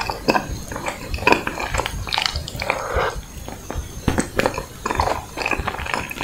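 Close-miked mouth sounds of eating a strawberry ice cream bar: irregular wet bites, clicks and smacks with chewing in between.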